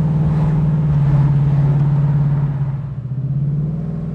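The GM 502 cubic-inch big-block V8 crate engine of a 1971 Chevelle convertible running steadily while cruising, heard from inside the cabin. About two and a half seconds in it eases off, and its note drops a little and gets quieter.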